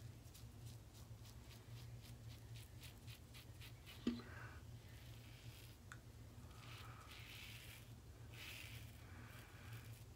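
Blackland Vector single-edge razor with a Feather Pro Super blade scraping through beard stubble on the cheek, faint. It starts as a run of quick short strokes, about three a second, and turns to a few longer scrapes later on.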